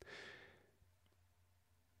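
A man's faint intake of breath between sentences, lasting about half a second, then near silence.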